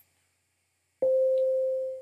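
Sonic Pi's default 'beep' synth playing MIDI note 72 (C5, about 523 Hz): a single pure, steady tone about a second long that starts abruptly about a second in and fades away. A faint click comes right at the start as Run is pressed.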